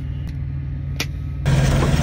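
Semi truck's diesel engine idling steadily, muffled as heard from inside the sleeper cab, with a single click about a second in. About a second and a half in it turns suddenly louder and hissier, the same idle now heard up close under the open hood.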